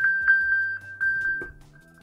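iPhone's locator ping, set off from an Apple Watch so the phone sounds and can be found: a quick run of high electronic pings, about four a second, over one held tone, fading out about halfway through.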